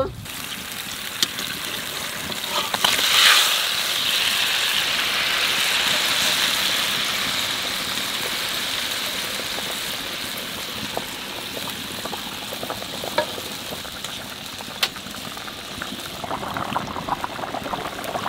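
Thin hilsa-and-eggplant curry boiling in an iron kadai, a steady bubbling hiss that surges sharply about three seconds in and then slowly eases.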